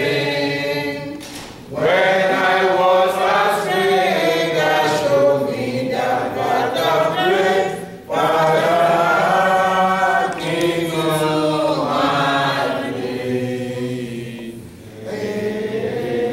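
Congregation singing a hymn together, unaccompanied, in long phrases with brief breaks about two seconds in and about halfway through.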